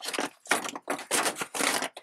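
Clear plastic packaging crinkling and rustling in a quick series of short bursts as a hand rummages through it.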